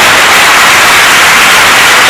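Loud, steady hiss-like noise with no clear speech in it, ending as the voice returns.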